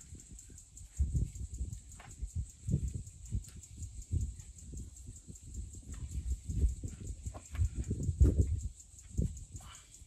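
Soft, irregular thuds and knocks of floured scone dough pieces being turned and patted on a wooden chopping board.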